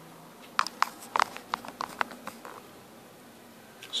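A quick run of about ten light clicks and taps spread over a couple of seconds, the sound of things being handled at close range.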